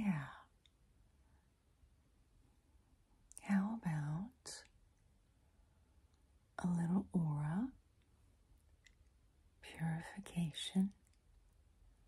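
A woman's soft, half-whispered voice speaking three short phrases, with quiet pauses between them.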